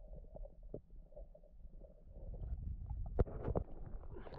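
Muffled low rumble of water heard by a camera held underwater, with faint scattered ticks. A couple of sharp knocks come about three seconds in, as the camera is raised towards the surface.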